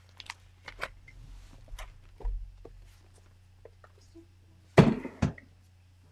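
A scrapbook album in a ring binder being handled, with light clicks and rustles of its pages and a low thud, then two loud thumps close together near the end as the album is closed and lifted away.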